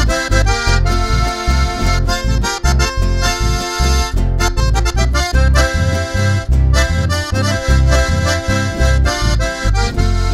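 Instrumental break of a live folk tune: a button accordion playing the melody over an electric bass line whose low notes change in an even rhythm.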